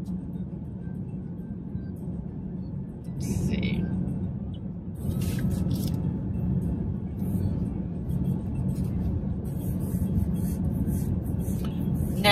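Steady low road and engine rumble inside a moving car's cabin, with faint music underneath and a few brief rustles.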